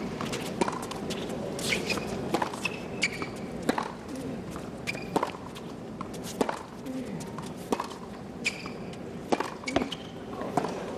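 Tennis rally on a hard court: racquets striking the ball back and forth in sharp pops, with sneakers squeaking and scuffing on the court, over a low crowd murmur.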